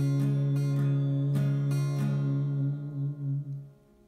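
Acoustic guitar strumming a closing chord several times in the first two seconds, then letting it ring until it dies away shortly before the end.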